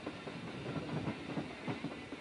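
Faint, steady noise of a train rolling along the rails.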